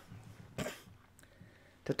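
A single short cough about half a second in, between stretches of speech, which resumes near the end.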